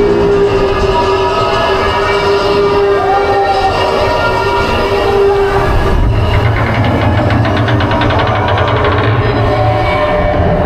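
Roller coaster train climbing a chain lift hill: a steady mechanical hum with a held tone, then, from about six seconds in, a fast, even clatter of the lift chain over a low drone.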